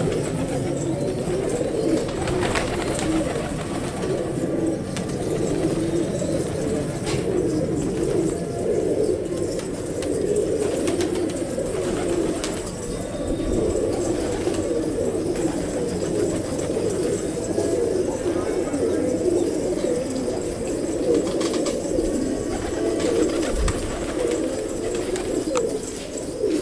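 A flock of fancy pigeons cooing without a break, many low coos overlapping into a steady murmur.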